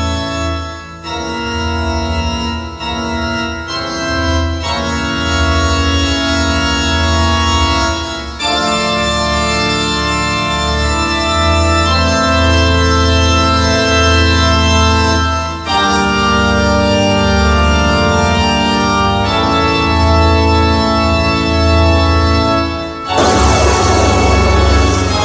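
Organ music: sustained organ chords held for several seconds each and changing about half a dozen times, with a burst of hiss-like noise near the end.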